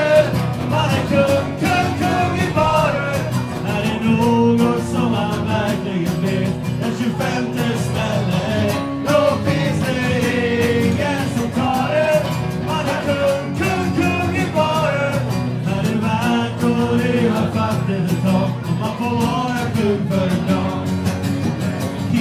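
Live concert music: a man singing with guitar accompaniment.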